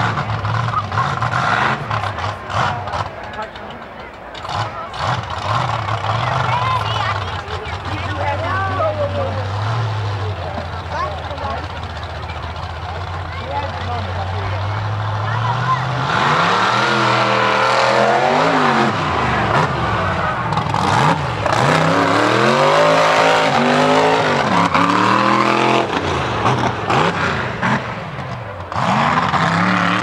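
Mega truck's engine idling steadily before its run, then revving loudly from about halfway, its pitch rising and falling again and again as it drives through the mud pit.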